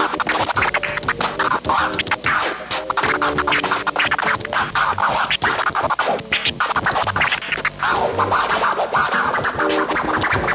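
Turntable scratching: a record pushed back and forth by hand in rapid strokes, chopped by quick fader cuts on the mixer, over backing music.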